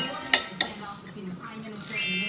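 A sharp clink of tableware on a plate about a third of a second in, then a lighter one, as a sausage is picked up from the plate.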